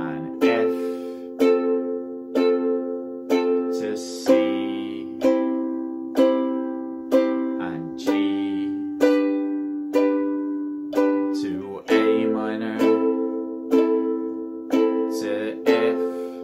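A ukulele is strummed slowly, one strum about once a second, each chord left to ring, moving through chord changes of a chord progression.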